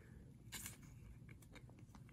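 Near silence, with a few faint soft ticks and rustles of a trading card being slid into a thin plastic sleeve.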